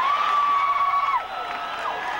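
Rock concert crowd cheering, with long held yells from people close by. The loudest yell falls off a little over a second in.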